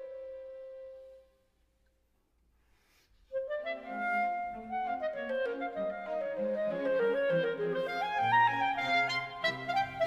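A clarinet's held note dies away about a second in, then after a two-second silence the clarinet launches into a solo passage of quick running notes that climb higher. The full orchestra comes in loudly at the very end.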